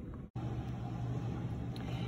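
A steady low hum over a faint, even background noise. The sound drops out completely for a moment near the start, then the hum runs on unchanged.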